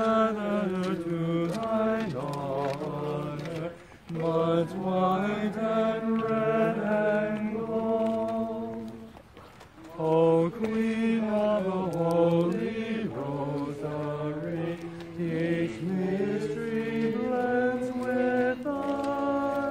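Voices singing a slow hymn in unison, holding long steady notes in phrases, with short pauses for breath about four seconds and nine seconds in.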